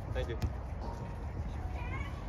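Players' voices calling out briefly during a grass volleyball game, with a single sharp smack about half a second in. A short, rising high-pitched call comes near the end. Steady wind rumbles on the microphone throughout.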